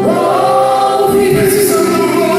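Gospel worship song performed live: a lead singer and a group of backing singers singing together over a band, the voices sliding up into a long held note at the start.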